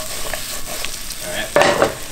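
Sliced peppers, zucchini and tomatoes sizzling in butter and olive oil in a frying pan as they are stirred and tossed, a steady frying hiss. About one and a half seconds in comes a short, louder clatter of the vegetables moving against the pan.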